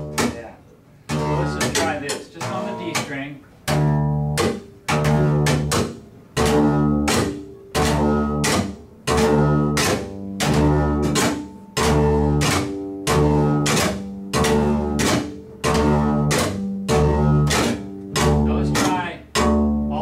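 Upright bass played slap-style: each plucked note is pulled hard so the string snaps back against the fingerboard, followed by the hand smacking the strings for a percussive click. It goes in a steady repeating rhythm, a strong low note about every second and a quarter with sharp clicks between.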